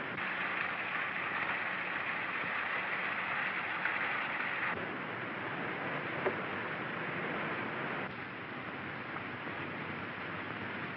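Steady hiss of an early-1930s film soundtrack with no distinct sound on it. The hiss drops in tone about halfway through and again a few seconds later.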